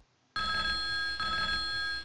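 Skype for Business incoming-call ringtone playing on the computer: one electronic ring of a few steady high tones, starting about a third of a second in and stopping abruptly after under two seconds. It signals a parked call ringing back after its park timeout ran out with nobody retrieving it.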